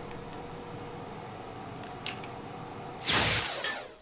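A low, steady background hum, then about three seconds in a short, loud hiss that dies away within a second.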